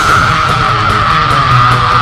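Heavy metal band playing live and loud: distorted guitars and drums under one long, high lead note that sinks slightly in pitch.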